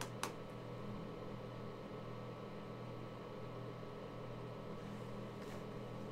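Room tone: a steady low machine hum, with a short sharp click just after the start and a fainter one near the end.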